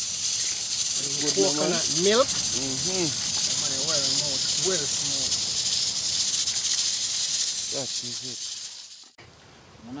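A steady high hiss under people talking, cut off abruptly about nine seconds in.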